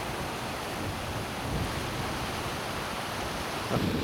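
Wind on the microphone: a steady rushing noise with uneven low rumble.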